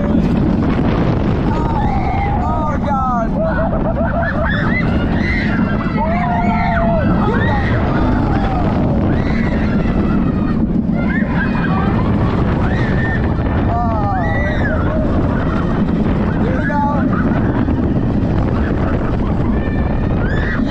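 Steel roller coaster train plunging down its vertical drop and through its inversions: a loud, unbroken rush of wind and track noise, with riders screaming and yelling in short cries over it.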